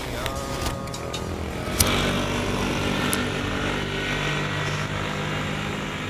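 A motor vehicle engine running, swelling about two seconds in and then holding a steady hum. A few sharp clicks sound over it in the first couple of seconds.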